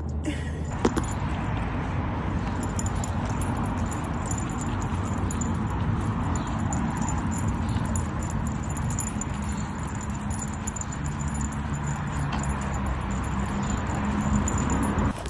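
Steady wind rushing over the phone's microphone while walking outdoors, with light metallic jingling and a single click about a second in.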